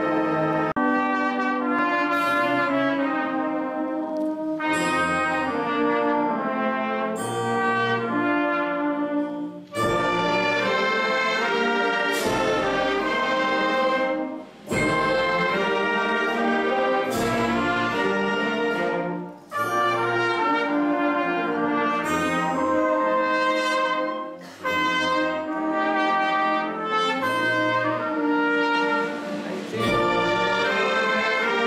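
A live band of brass instruments, trumpets and trombones among them, playing a piece under a conductor, with short breaks between phrases about every five seconds.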